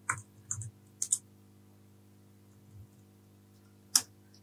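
Computer keyboard keys pressed one at a time: a handful of sharp, separate clicks in small pairs during the first second or so, then a long pause and a last keystroke near the end.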